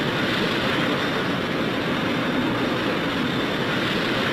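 Jet airliner in flight, its engines making a steady, even rushing noise.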